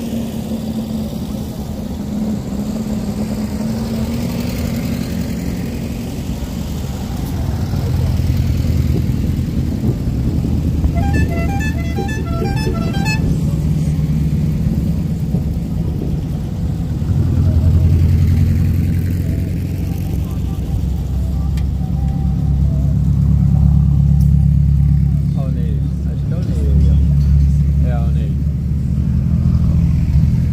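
Buggy engines running as a convoy of buggies drives past on a dirt road, the sound swelling as each one nears. About eleven seconds in, a rapid series of horn toots lasts about two seconds.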